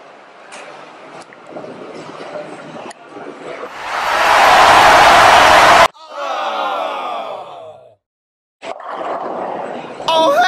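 Bowling alley background noise with a few faint clicks. A loud rush of noise then builds over a couple of seconds and cuts off suddenly, followed by a slowed-down voice sliding down in pitch over a slow-motion replay of the ball hitting the head pin.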